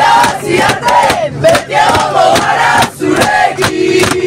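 A group of voices chanting and singing loudly together in a celebration chant, over a rhythmic beat of hands striking about three or four times a second. The sound is in an airliner cabin.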